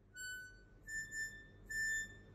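Harmonica playing a few high, held notes of steady pitch, stepping up from one lower note to a slightly higher note that sounds twice.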